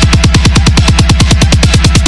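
Dubstep/trap electronic instrumental: a rapid, even roll of drum hits, about ten a second, each with a low bass thud that drops in pitch.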